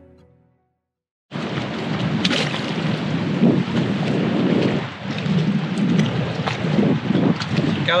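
Background music fading out, then after a short silence, wind buffeting an outdoor camera microphone in a loud, gusting rumble with a few sharp knocks.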